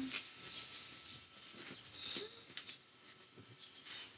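Quiet handling of a large cardboard sheet: faint rustles and a few light taps and scrapes.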